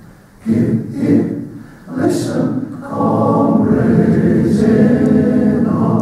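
Male voice choir singing in full harmony: two short separated phrases, then from about halfway a long held chord.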